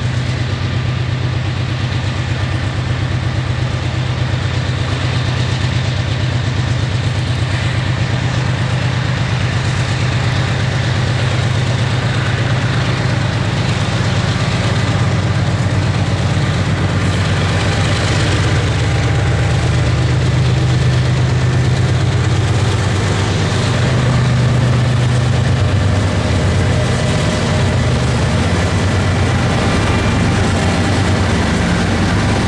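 Norfolk Southern diesel freight locomotives running with a steady low engine drone, growing slightly louder as the train approaches and passes close by.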